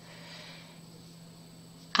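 Quiet room tone: faint steady hiss with a low constant hum, with no distinct event.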